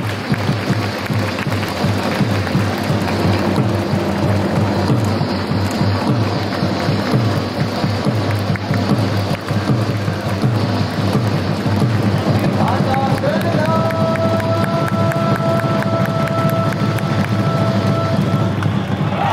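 Stadium cheer-song music with a steady, dense drum beat and voices singing or chanting along. About twelve and a half seconds in, a high held note slides up and then sustains almost to the end.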